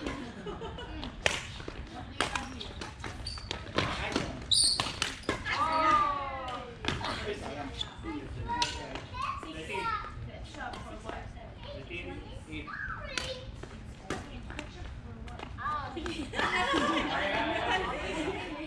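Badminton rally: sharp clicks of rackets striking a shuttlecock again and again, echoing in a large hall. Players' voices call and shout between the hits, loudest near the end.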